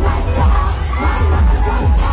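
Live concert sound heard from the audience: loud amplified pop music with heavy bass under a crowd of fans screaming and cheering.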